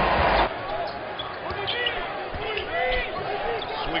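Basketball arena sound from an NBA broadcast: a loud crowd noise cuts off suddenly about half a second in. A quieter court follows, with sneakers squeaking on the hardwood and a ball bouncing.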